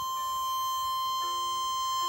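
Diatonic harmonica in the key of F holding one long high blow note (hole 6, a C), with a fainter lower tone joining about a second in.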